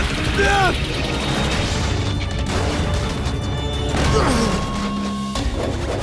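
Cartoon battle soundtrack: dramatic music under crashing impact sound effects, with a short cry right at the start. About four seconds in, a falling swoop settles into a steady hum that cuts off suddenly.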